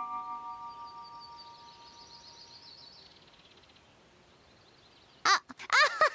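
A magical chime sting, several held tones with a faint high shimmer, ringing out and fading away over about three seconds. Near the end a girl starts laughing.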